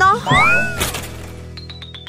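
A cartoon character's whiny, wailing cry with arching pitch, then a thin falling whistle with rapid clicks, about ten a second, that fades away: a comic sound effect for being thrown out of the window.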